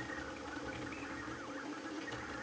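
A Voron 0.2-based CoreXY 3D printer running a fast print: a steady, fairly quiet mechanical whir from its fans and motors, with faint stepper-motor whines rising and falling about a second in as the toolhead moves.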